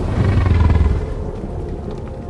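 Deep, loud rumble that dies away over the second half, with faint sustained music tones starting to come in under it near the end.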